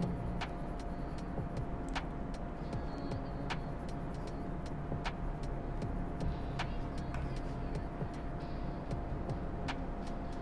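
Graphite 2B pencil shading on paper, a faint scratching, over a steady background hum with a faint steady tone. Sharp ticks come about every second and a half.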